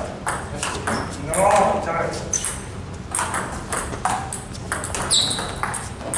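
NEXY plastic table tennis ball being struck back and forth in a rally: a rapid, irregular series of sharp clicks as it hits the paddles and bounces on the table, with more taps from play at nearby tables.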